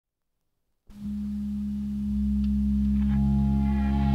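Instrumental opening of a 1968 rock recording: after a brief silence, sustained low droning tones come in and slowly swell, with higher ringing notes joining about three seconds in.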